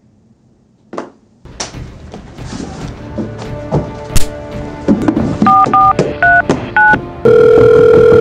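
Tense background music with sharp hits, then four quick phone keypad tones and a long, loud ringing tone on the line near the end.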